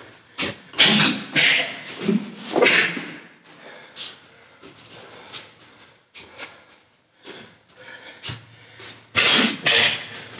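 A karate fighter shadow-boxing, with short, sharp exhaled breaths driven out on each punch: several quick ones in the first three seconds, a few spaced ones, a quieter stretch, then another rapid cluster near the end.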